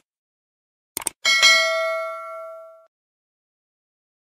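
Subscribe-button animation sound effect: a quick double mouse click about a second in, then a bright notification-bell ding that rings out and fades over about a second and a half.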